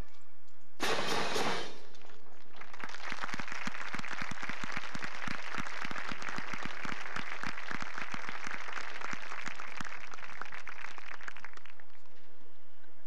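A marching band's last chord sounds briefly about a second in and cuts off. From about three seconds in an audience applauds, a dense patter of clapping that stops near the end.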